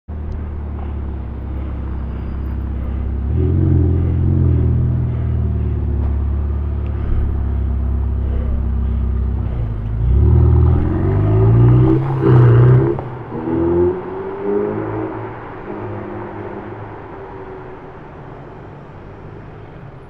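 Ferrari 488 Pista's twin-turbo V8 running at low speed as the car rolls past, then accelerating away about ten seconds in, its pitch climbing through a gear change before the sound fades into the distance.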